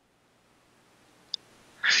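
Near silence with a tiny short blip a little over a second in, then a man's quick intake of breath near the end.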